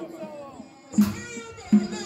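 A group of men chanting a Mawlid devotional song together to a drumbeat. The beat drops out at the start, leaving a quieter, gliding voice, then picks up again with the voices about a second in.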